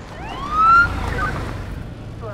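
A police car siren gives a single short rising whoop, with a low rumble underneath.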